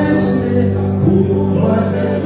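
Gospel music: a choir singing over sustained low accompanying notes.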